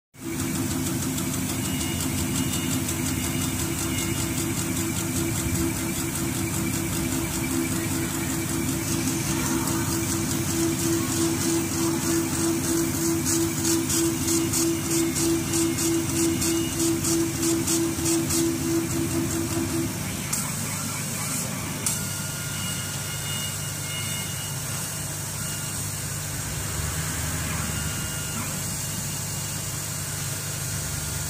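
Z1390 CO2 laser cutting machine running while it cuts acrylic sheet. A steady machine hum and hiss runs under a pitched whine from the moving cutting head's drive motors, and that whine pulses quickly for a while. The whine stops about twenty seconds in, two short clicks follow, and the steady hum goes on.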